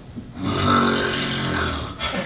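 A person's long, low snore lasting about a second and a half, starting about half a second in.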